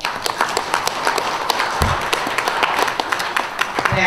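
Audience clapping, starting suddenly and dying away at the end, with a single dull low thump about two seconds in.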